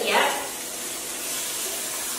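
Diced onions sizzling in a hot pot with a steady hiss, just added as the first step of a curry base.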